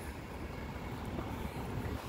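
Faint, steady low rumble of outdoor background noise with no distinct events.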